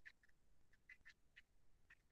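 Faint pencil scratching on paper on a clipboard: a run of short, quiet strokes as words are written.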